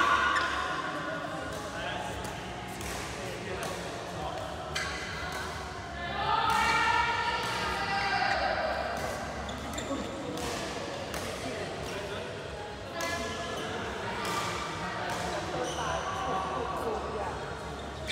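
Badminton doubles play: repeated sharp strikes of rackets on a shuttlecock, with players' voices calling out around the middle.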